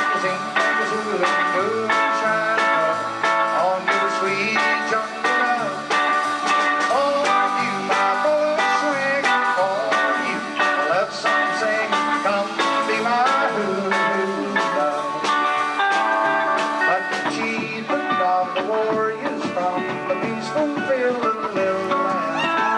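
Live rock and roll band playing: electric guitars over bass and a steady drum beat, with guitar notes bending in pitch.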